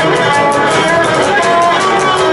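Cretan lyra bowing a melody over a lute strummed in a quick, even rhythm: live Cretan folk music.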